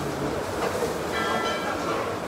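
Steady café background noise with indistinct voices. About a second in, a brief high-pitched tone sounds for under a second.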